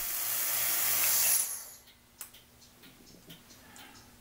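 Air hissing in a vacuum degassing set-up (vacuum pump and chamber), growing louder for about a second and a half and then dying away quickly. A single sharp click follows a little later.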